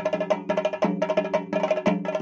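Fast, even festival drumming from a percussion ensemble, with many strokes a second over a steady pitched ring.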